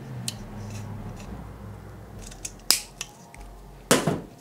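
Pliers snipping through a flexible addressable LED strip: a few short, sharp clicks, the loudest about two and a half seconds in and another just before the end.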